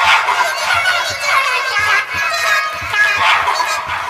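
Several overlapping, pitch-distorted copies of a cartoon nursery-rhyme soundtrack playing at once, a dense jumble of squeaky, animal-like voices over a steady beat.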